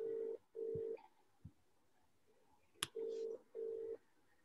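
Telephone ringback tone: a low steady double ring, two short beeps close together, heard twice about three seconds apart, the sound of an outgoing call ringing at the other end. A single short click comes just before the second double ring.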